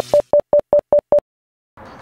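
An electronic beep sound effect: a quick run of short, evenly spaced beeps at one pitch, about five a second, like a telephone busy signal, stopping abruptly a little over a second in.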